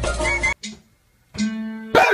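Backing music stops abruptly about half a second in. After a brief gap a single guitar note rings steadily, and a sharp knock ends it.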